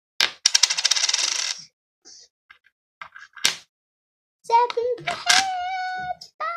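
A tossed coin lands on a hard surface and rattles as it spins down to rest, a fast run of clicks lasting about a second. A single sharp click follows about three seconds in.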